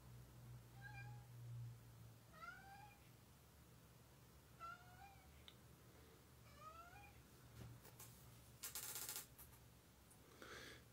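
A cat meowing faintly four times in short calls a couple of seconds apart, followed by a brief rustle near the end.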